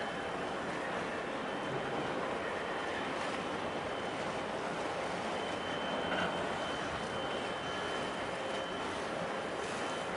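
Steady rushing outdoor background noise at a harbourside, with a faint thin high tone running through it.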